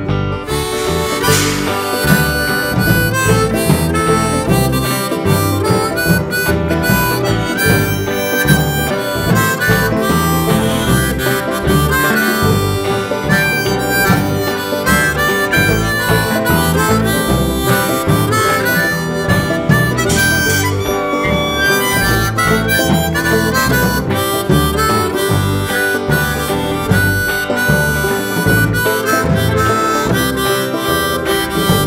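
Instrumental break of a rock song: a harmonica solo over guitar and a steady drum beat.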